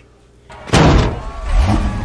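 Film soundtrack of a Ford GT40 race car in the pit lane: one sudden loud slam about two-thirds of a second in, then the car's engine running with its pitch rising as it pulls away.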